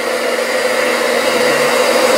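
Handheld blow dryer running steadily, its air rush blowing on hair, with a steady motor hum beneath it.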